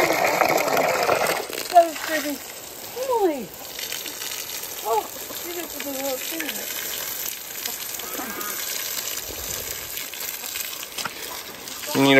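Garden hose spraying water, first into a bucket, then over an alpaca's coat and the ground, a steady hiss. Several short animal calls, one falling steeply in pitch, come in the first half.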